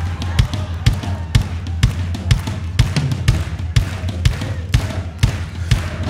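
Tribal-style drum beat played on the church sound system: deep, steady hits about twice a second with lighter hits between, over a sustained low bass.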